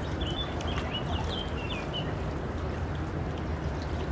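Steady low rush of river water, with a small bird giving a quick run of high chirps over the first two seconds.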